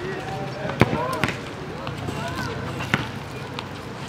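Basketball bouncing on an asphalt court: four separate bounces, the loudest about a second in.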